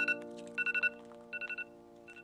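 iPhone alarm sounding: rapid groups of about four high beeps, one group roughly every 0.7 s, each group quieter than the last, over a faint held chord of background music.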